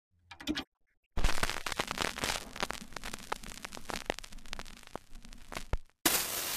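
Crackling sound effect: a short blip, then a dense, irregular run of pops and crackles like old film or record crackle starting about a second in and stopping just before the end.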